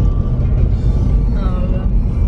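Loud, steady rumble of a vehicle driving off-road over a rough desert dirt track, heard from inside the cabin, with music underneath.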